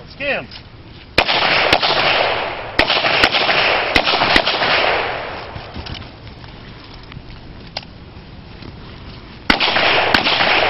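Revolver shots fired outdoors at a handgun match. Six shots come in quick pairs and singles over about three seconds, each run trailing off into a long rush of sound. A pause of about five seconds follows, in keeping with a reload, and firing starts again near the end.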